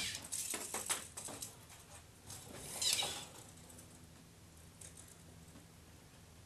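Light handling noises of a tape measure and pencil worked against a wall: a brief scraping swish at the start and another about three seconds in, with small clicks and taps between them. It then settles to faint room noise.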